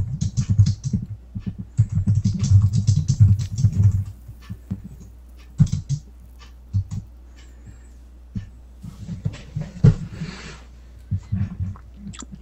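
Typing on a computer keyboard: quick runs of keystrokes for the first few seconds, then scattered single key clicks.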